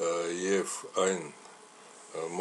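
A person's voice speaking a few words, then a pause of about half a second.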